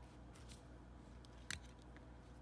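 Faint clicks and taps from handling a clear plastic AA battery holder and its batteries, with one sharper click about one and a half seconds in.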